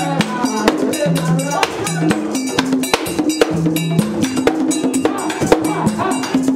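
Vodou ceremony music: a metal bell struck in a rapid, steady rhythm, about four or five strokes a second, over drums and singing voices.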